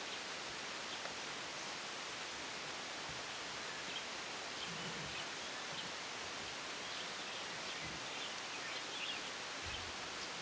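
Forest ambience: a steady, even hiss, with faint scattered high bird chirps from about four seconds in.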